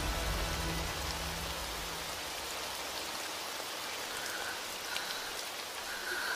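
Steady heavy rainfall, an even hiss of rain on surfaces. A low rumble sits underneath at first and fades out about two seconds in.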